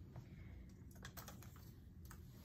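Near silence: room tone with a few faint, light clicks.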